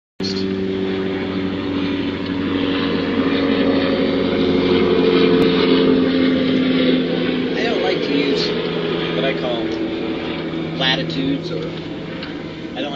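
A motor's drone, several steady tones under a rushing noise, growing louder toward the middle and then fading as it passes. A man's voice comes in briefly over it in the last few seconds.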